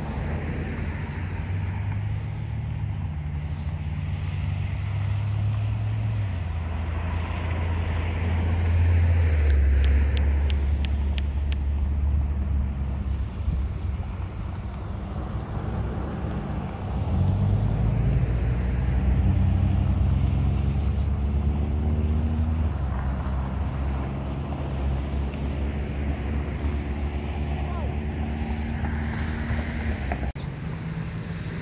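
A low engine hum whose pitch shifts up and down in steps, with a few brief clicks about ten seconds in.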